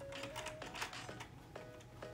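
Horizontal window blinds clicking and rattling in quick irregular bursts as the slats are tilted open, over quiet background music.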